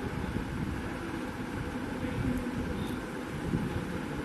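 Steady low hum and hiss of room noise, with a few faint light clicks of small glass beads being picked from a plastic lid.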